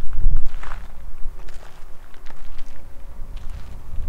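Footsteps on a dirt and gravel surface, uneven and irregular, over a heavy low rumble of wind on the microphone that is loudest in the first half second.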